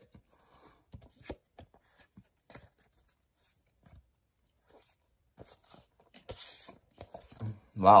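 Baseball cards being thumbed through in the hand: faint, scattered clicks and rustles of card stock sliding off the stack, with a half-second hiss about six seconds in.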